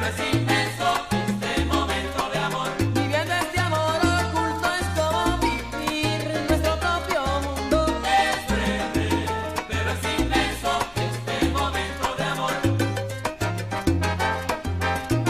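Salsa romántica music, with a bass line moving in short held notes under a full band.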